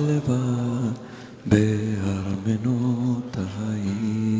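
Voices chanting a slow Sabbath prayer melody in long held notes, with a breath pause about a second in and another brief one near the end.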